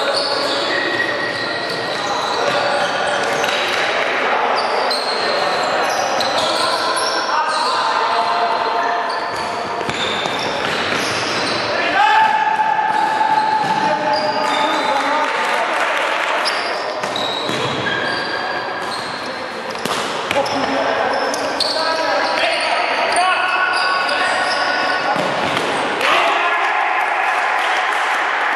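Futsal game play in a large echoing sports hall: many short squeaks of players' shoes on the court floor, the ball being kicked and bouncing, and players calling out.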